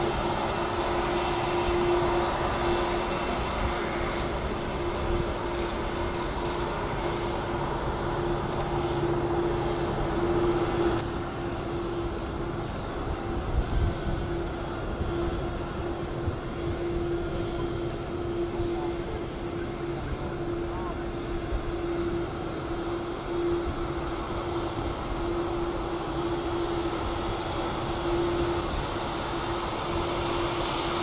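Air Force One, a VC-25A Boeing 747, taxiing on its four turbofan engines at low power: a steady jet whine over a constant hum. The level dips slightly about a third of the way through.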